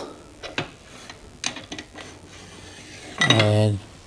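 A few light, sharp metallic clinks as a motorcycle's rear brake caliper bracket is slid off its mount and knocks against the surrounding metal parts. A short voice-like sound comes near the end.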